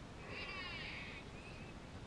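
A high-pitched yell or cheer from young voices, several at once, lasting about a second.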